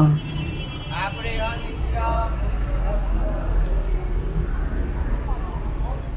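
City street ambience: a motor vehicle's low engine rumble sets in about two seconds in and holds steady, with passersby talking over it, loudest in the first two seconds.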